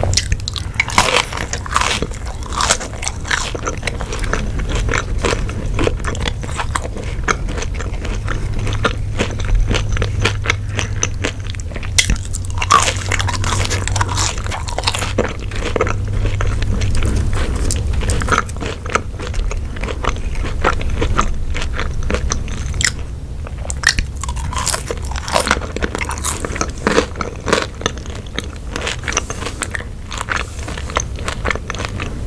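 Close-miked chewing of ketchup-dipped french fries: biting and crunching with a dense run of small mouth clicks and crackles.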